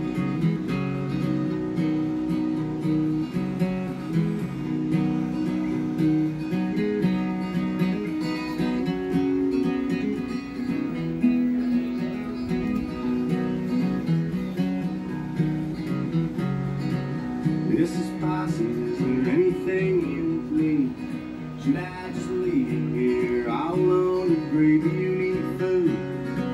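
Acoustic guitar strumming chords in an instrumental break of a country-style song, with a melody line that bends in pitch joining in the later part.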